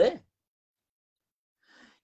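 A man's spoken word ending, then dead silence, and a faint breath drawn in near the end just before he speaks again.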